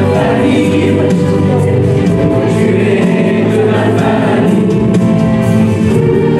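A group of men and women singing a song together, loud and steady throughout.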